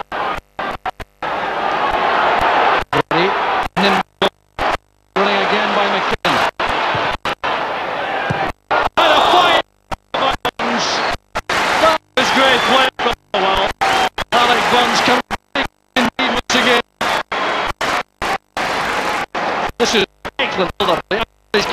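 Badly damaged football-broadcast soundtrack that cuts out to silence dozens of times. Between the gaps there are voices, too broken up to make out.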